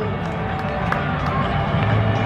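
Ballpark crowd chatter from spectators in the stands, a steady hubbub with scattered faint voices, with the public-address announcer's voice trailing off at the start.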